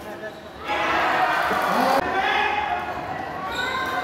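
Badminton rally sounds in an echoing sports hall: racket hits on the shuttlecock and players' footwork on the court. From about a second in there is a loud wash of spectators' voices and shouting.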